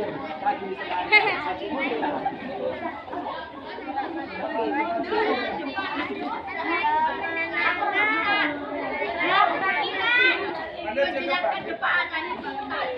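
Many voices talking over one another at once, unintelligible chatter with no single voice standing out.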